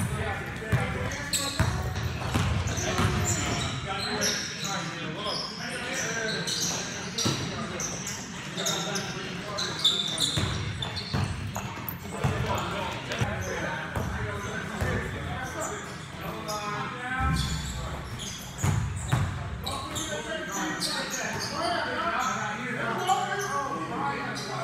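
Pickup basketball game in a large echoing gym: a basketball being dribbled on the indoor court in repeated bounces, with short high sneaker squeaks and players' voices calling out.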